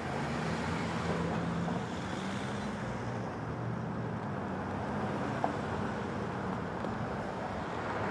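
Road traffic: a steady wash of car engine and tyre noise with a low hum underneath, with a brief tick about five and a half seconds in.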